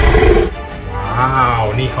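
A dinosaur roar sound effect, of the kind a toy dinosaur makes: a loud, rough roar that ends about half a second in, then a shrill screech that rises and falls.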